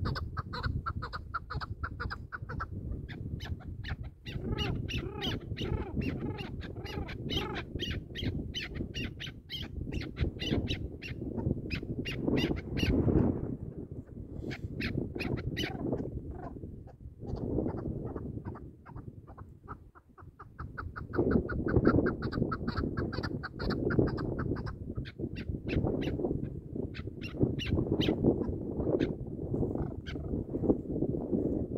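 Chukar partridge calling: long runs of rapid, repeated clucking notes, broken by a pause partway through, over a steady low noise.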